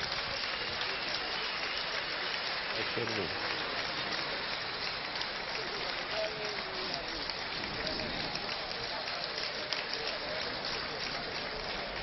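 Crowd applauding steadily, a sustained even patter of many hands clapping, with a few faint voices in among it.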